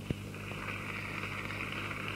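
Steady low mains hum and hiss from an old analogue videotape recording, with a single sharp click just after the start.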